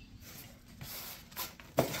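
Faint handling noises from a styrofoam packing box and the foam model-plane wing inside it, with a sharp knock near the end.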